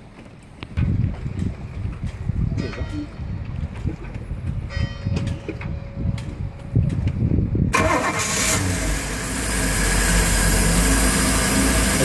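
Cold start of a Volvo Penta AQ211A marine engine with its Rochester 2GE carburetor's electric choke closed: the starter cranks the engine for about seven seconds, then the engine catches and runs on at fast idle.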